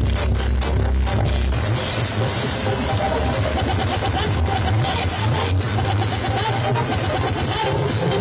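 Electronic dance music played through stacked sound-system speaker cabinets, heavy in the bass. The deepest bass drops out about a second and a half in while the beat carries on.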